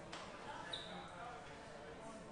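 Faint, indistinct murmur of distant voices in a room, with a sharp knock just after the start and a brief high squeak just under a second in.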